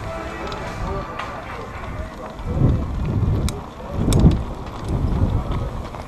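Wind buffeting the microphone of a camera riding along on a bicycle: irregular surges of low rumble, strongest in three gusts in the second half.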